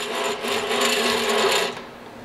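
Hand-cranked vertical sausage stuffer turned in its high-speed gear, the gears and plunger running with a steady mechanical noise as the plunger winds down toward the meat. It stops just before the end, where the plunger meets the sausage meat.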